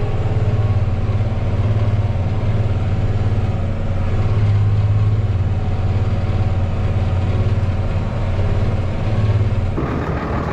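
Tractor engine and pull-type forage harvester running steadily under load, heard from inside the tractor cab as a loud, even low drone while the pickup gathers and chops a swath of green barley. The sound changes abruptly just before the end.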